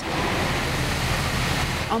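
Fire hose spraying a jet of water onto burnt debris: a steady, loud rushing hiss.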